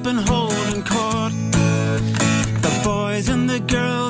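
A man singing a song while strumming an acoustic guitar, played live.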